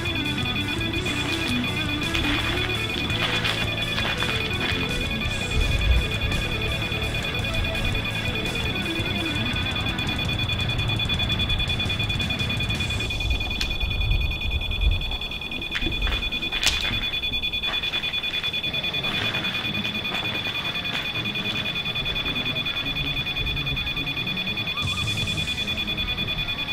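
Spirit box sweeping through radio stations: choppy static with brief fragments of broadcast music and voices, and two steady high-pitched tones running under it.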